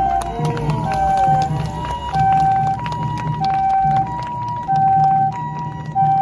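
Japanese ambulance's two-tone electronic siren (the "pii-poo"), alternating evenly between a high and a low note, each held about two-thirds of a second.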